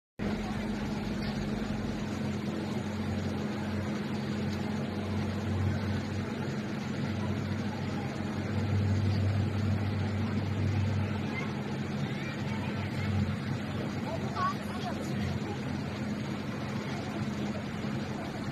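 Steady low engine hum that runs on without change, with a strong constant tone.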